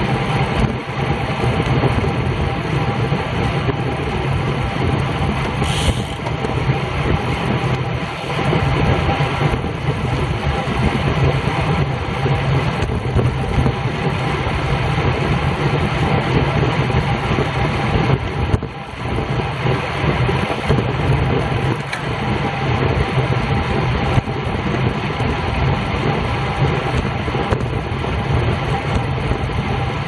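Steady wind rush and road noise on the microphone of a camera mounted on a road bike riding at speed.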